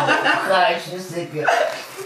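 A person's voice making wordless vocal sounds, no clear words, with a short break and a fresh outburst about one and a half seconds in.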